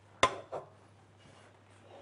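A single sharp knock of metal cookware at the stove, ringing briefly, followed by a smaller knock, over a steady low electrical hum.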